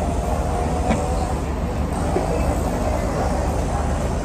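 Steady low rumble with an even hiss of background noise, with a faint click about a second in.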